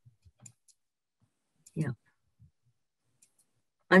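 Near silence of a noise-suppressed video call, broken by a few faint short clicks in the first second and again near the end, with one short spoken word about two seconds in.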